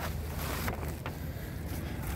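Steady low wind rumble on a handheld phone's microphone, with no distinct events.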